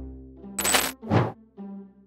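Soft background music with a bright, metallic, chime-like sound effect about half a second in, followed by a second short swish about a second in.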